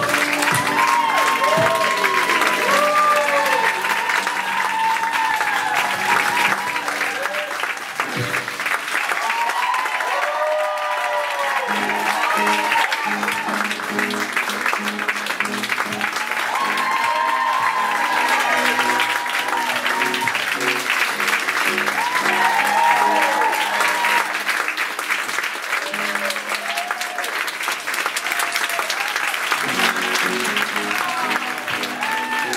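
A theatre audience applauding and cheering with whoops. A keyboard keeps playing sustained low chords underneath.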